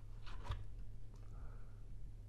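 Quiet room tone with a steady low hum and a few faint soft clicks about half a second in.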